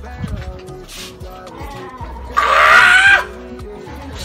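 Background music with steady held notes. About two and a half seconds in, a loud pitched cry lasting under a second rises over it.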